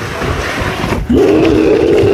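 A rushing, crowd-like noise, then about a second in a loud, long held vocal yell.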